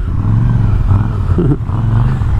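Macbor Montana XR5's twin-cylinder engine running steadily at low revs, an even low hum.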